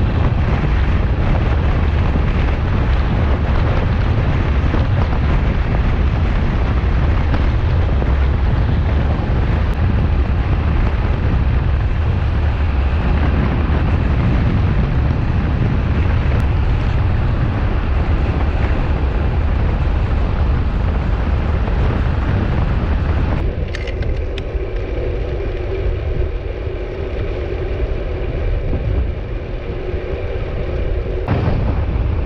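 Wind rushing over a handlebar-mounted camera's microphone as a road bike rolls at speed. About three-quarters of the way through, the rush drops and becomes quieter, and a few steady tones come through.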